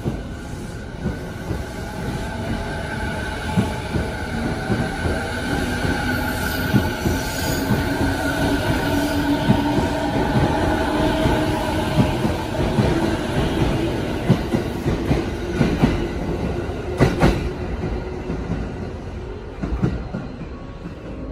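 A JR 209-series electric commuter train pulling out along the platform. Its traction motors whine with a slowly rising pitch, the wheels squeal, and the wheels clack over the rail joints; a louder knock comes about 17 seconds in.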